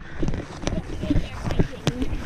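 Wind buffeting the microphone, with two sharp knocks, one under a second in and one near the end, as fishing gear is carried along.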